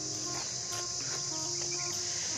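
Insects droning steadily at a high pitch, with faint background music of soft changing notes underneath.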